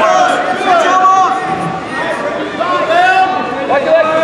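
Several people shouting at once, spectators and coaches yelling over one another with no single clear voice.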